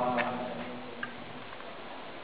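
The end of a phrase of unaccompanied male folk singing fades out, followed by a pause with faint room noise and a couple of small ticks.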